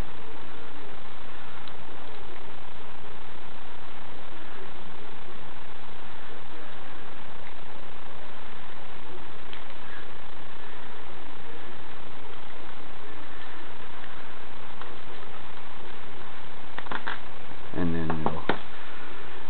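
Steady hiss of recording noise, with a few faint clicks as the small nitro engine's piston and connecting rod are handled and wiggled loose. A voice begins near the end.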